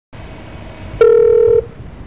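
Telephone line hiss, then one loud steady beep about a second in, lasting just over half a second, as a call connects to a recorded information line.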